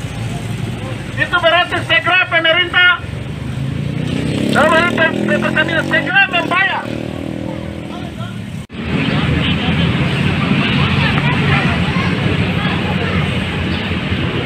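Indistinct voices, then a motor vehicle passing with rising engine pitch. After a sudden break about two thirds in, a steady rushing noise follows.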